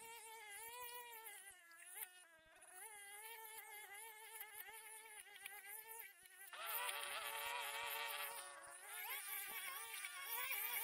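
Petrol brush cutters running as they cut weeds, their engine whine wavering up and down with the throttle. A nearer, louder one comes in suddenly about six and a half seconds in and eases off near nine seconds.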